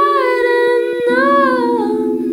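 Music: a woman's high voice sings a slow line that slides between notes over two steady held tones. The held tones move to a lower pair about a second in.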